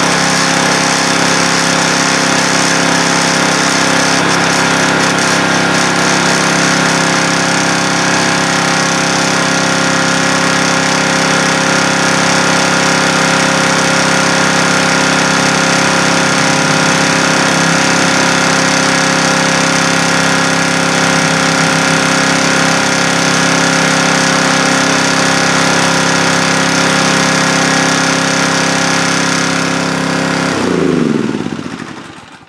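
Small gasoline engine of a pressure washer running steadily at a constant speed.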